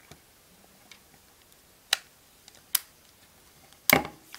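A few sharp clicks and taps from the plastic casing of a Kyocera Echo smartphone being handled and turned over in the hands, the loudest just before the end.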